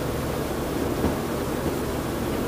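Steady hiss of background room and recording noise with a faint low hum, with no distinct sounds in it.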